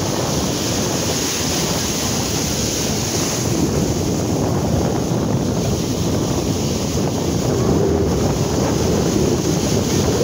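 Ocean surf breaking and washing up the beach as foaming swash, a steady loud rush that swells slightly near the end. Wind buffets the microphone at the same time.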